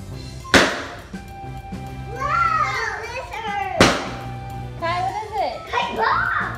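Two balloons bursting, two sharp bangs about three seconds apart, with children's voices and background music.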